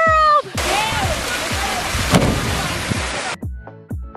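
A shout, then a sudden splash into a swimming pool and a rush of churning water that cuts off abruptly. Background music with a steady beat starts about three seconds in.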